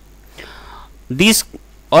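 Speech pause in a lecture: a soft breath, then a short spoken syllable, with speech resuming at the very end.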